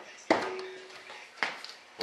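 Metal lid being put back on a tin of epoxy hardener: a sharp knock with a brief ringing tone, then a second, lighter knock about a second later.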